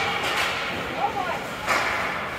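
Ice hockey game play in a rink: faint voices calling out across the ice, and one sharp clack about three-quarters of the way through.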